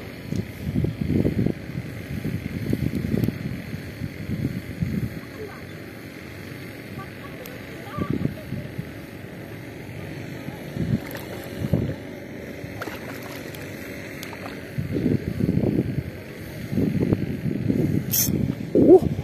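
Gusts of wind buffeting the microphone in irregular bursts, over the faint steady hum of a distant boat engine.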